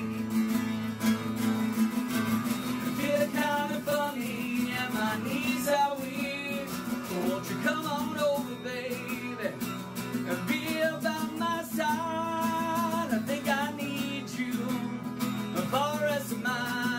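A man singing a slow love song to his own guitar accompaniment, holding long notes with a waver in them.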